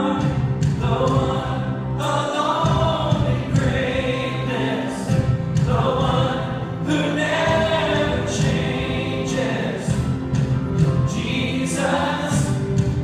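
Church choir and worship singers singing a slow worship song with instrumental backing, in sung phrases about two seconds long.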